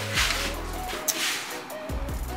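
Background music: steady bass notes and held tones, with two short hissy cymbal-like strokes.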